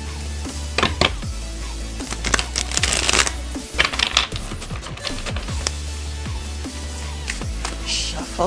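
A deck of tarot cards shuffled by hand: a run of quick paper snaps and flicks, with a denser rustling burst about three seconds in, over background music.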